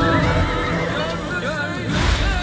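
A horse whinnying: one long neigh that wavers up and down in pitch for most of two seconds, over background music.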